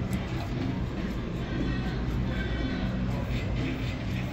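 Steady casino-floor background between calls from the roulette machine: a constant low hum with faint music and indistinct murmur under it.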